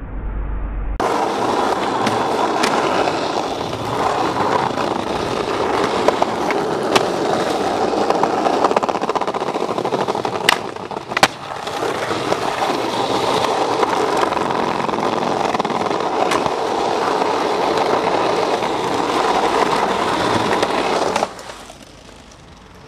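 Skateboard wheels rolling over rough pavement close to the microphone, a steady loud grinding rumble that starts abruptly about a second in and stops just before the end. A few sharp clacks of the board cut through it, two of them less than a second apart about halfway through.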